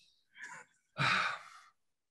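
A man sighing: a faint breath about half a second in, then a longer, breathy exhalation about a second in.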